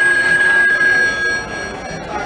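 Animated haunted telephone Halloween prop ringing through its small speaker: one steady ring that starts at once and stops about a second and a half in.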